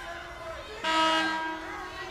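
Basketball arena horn sounding once: a sudden, loud, steady blast just under a second long, starting about a second in.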